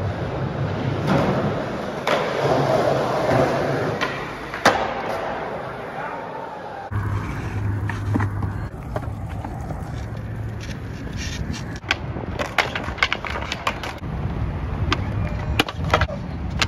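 Skateboard wheels rolling on concrete, broken by sharp clacks of the board hitting the ground, a few in the first half and clusters of quick ones in the second half.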